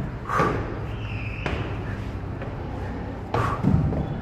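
Thuds and knocks on a wooden staircase and hatch frame as a man climbs through with a skateboard on his back, with a heavier thump near the end as the skateboard catches on the wood.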